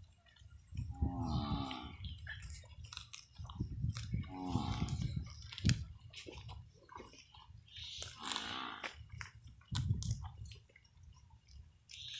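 Water buffalo calling with three short moos, a few seconds apart, the last one higher-pitched, over the crunch and tearing of dry grass as they graze.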